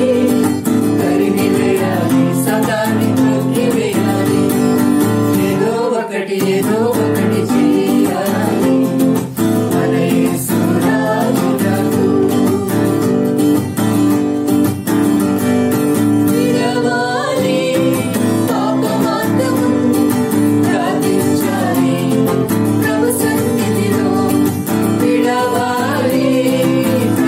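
Acoustic guitar strummed steadily through the chord changes of a Telugu worship song, G and C among them, with a voice singing the lyrics along.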